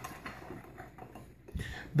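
Faint stirring of a metal spoon in a glass measuring cup of Red Bull with orange gelatin powder dissolving in it, and a soft low thump about one and a half seconds in.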